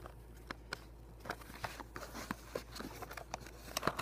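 A cardboard Beyblade box being handled: scattered light taps and clicks from fingers and the parts inside, busier near the end.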